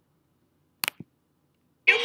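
Near silence broken about a second in by a sharp click and a softer second click just after it, like a computer mouse button pressed and released, which resumes a paused video. Near the end, the video's audio cuts in: a woman talking over music.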